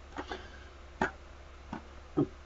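A few short computer-mouse clicks, the sharpest about a second in, over a low steady hum.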